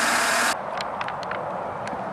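2014 Chevrolet Tahoe's 5.3-litre V8 idling under the open hood, a steady even running noise. About half a second in it cuts off abruptly, leaving quieter background with a few faint clicks.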